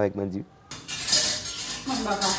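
Dishes and cutlery clinking and clattering in a kitchen sink as they are washed up, starting under a second in.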